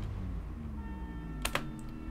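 A single sharp computer click about one and a half seconds in, pausing video playback. It sounds over faint background music with steady held tones and a low hum.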